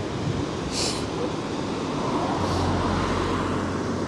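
Steady rushing noise of water pouring through a river weir's sluice gates, with a brief hiss about a second in and a low hum swelling in the second half.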